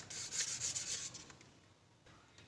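Hands rubbing and shifting a plastic tray of watercolour tubes, a scratchy rustle with a few small ticks that fades out after about a second.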